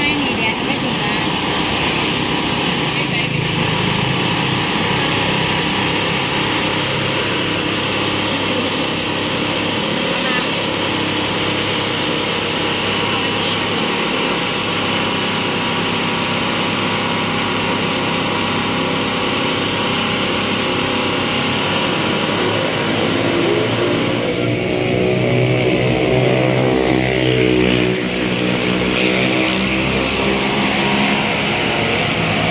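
A steady engine hum, with its pitch swelling and bending up and down near the end, and voices talking over it.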